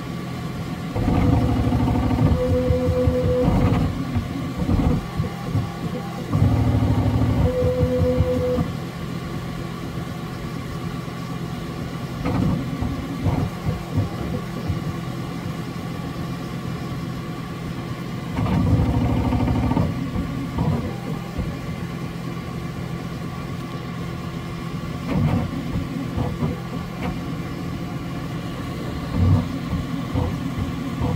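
Bambu Lab X1C 3D printer running a print: a steady hum, with several louder spells of motor whine, each a few seconds long, as the print head moves over the top of the benchy.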